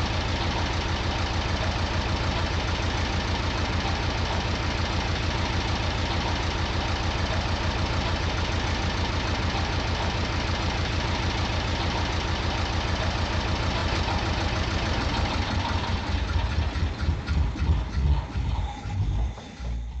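A machine running with a rapid, steady mechanical beat. In the last few seconds the beat slows and turns uneven as it winds down, then stops.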